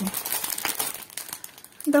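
Clear plastic packaging of a cross-stitch kit crinkling as it is handled and turned in the hands, a continuous run of crackles.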